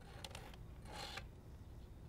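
Faint small clicks, then a brief scratchy rustle about a second in: needle-nose pliers handling a chenille stem inside a cardboard shoebox.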